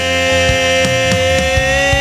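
Instrumental break in a rock song: a single sustained electric guitar note that bends slightly upward near the end, over a drum beat and steady bass.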